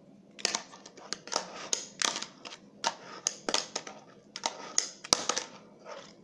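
Fingerboard deck and wheels clacking against a wooden tabletop and a homemade ledge: a string of about a dozen sharp taps and clacks, with one heavier knock about five seconds in.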